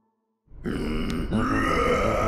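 A cartoon character's wordless, dazed vocal sound over background music, starting suddenly about half a second in after a moment of silence.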